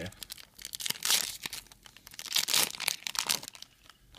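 Foil wrapper of a Yu-Gi-Oh booster pack crinkling and tearing as it is opened by hand, in two rustling bursts, about a second in and again from about two and a half seconds in.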